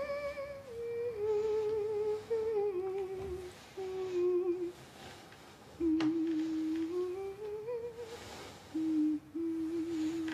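A woman humming a slow, wordless tune in long held notes, the melody stepping downward, pausing, then rising again in short phrases. A single sharp click comes about six seconds in.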